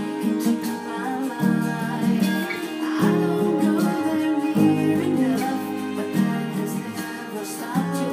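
Acoustic guitar strummed, the chords changing about every one and a half seconds.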